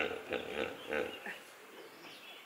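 Hippopotamus calling: a run of short, pulsed vocal bursts that dies away after about a second and a half, the tail of a longer call.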